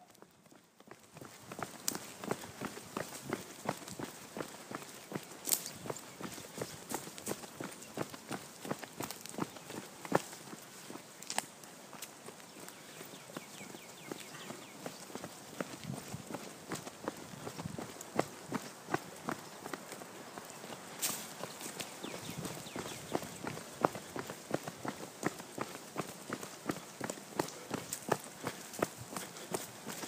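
Footsteps of a person walking briskly behind a trailing bloodhound: a quick, uneven run of soft steps throughout, with a few sharper knocks from the hand-held camera.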